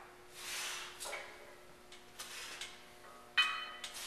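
Faint breaths from a man straining through wide-grip pull-ups, three soft puffs, then a brief high squeak near the end.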